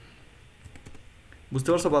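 Faint typing on a computer keyboard, a few soft keystrokes in the first second and a half, followed by a man's voice near the end.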